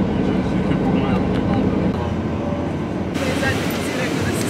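Steady road and engine drone inside a vehicle travelling on a motorway, with a low hum. About three seconds in it cuts suddenly to busier outdoor noise of people talking.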